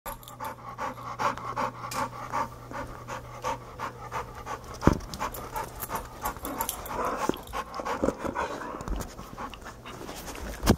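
Pit bull panting quickly and close up, about three to four breaths a second, with one sharp knock about halfway through.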